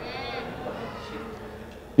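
A person's voice, high and bending in pitch for about half a second, then a fainter low voice-like sound fading away until speech resumes at the end.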